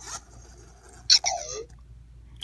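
A short electronic BB-8 droid chirp played through the iPad's speaker by the Sphero app, about a second in: a high warbling whistle over a falling lower tone, lasting about half a second.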